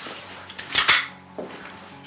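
A short, loud clatter about three-quarters of a second in, followed by a softer knock.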